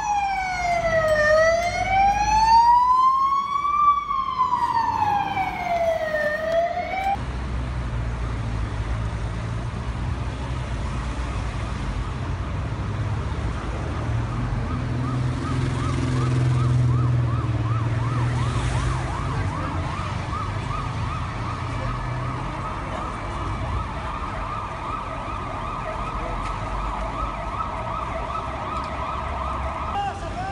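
Emergency vehicle siren wailing slowly up and down in pitch for about seven seconds, cut off suddenly. Then comes the low rumble of street traffic and engines, and a fainter, fast-warbling siren joins in from about twelve seconds on.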